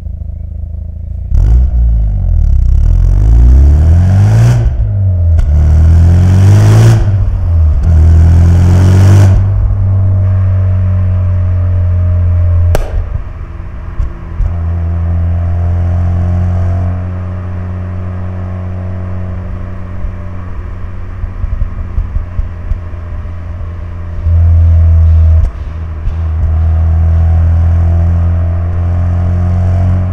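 Mazda RX-7 FD3S's twin-rotor 13B-REW rotary engine through an RE-Amemiya exhaust, accelerating about a second in with revs climbing and falling back several times as it shifts up. It then cruises at steady revs, with a short louder burst of throttle late on.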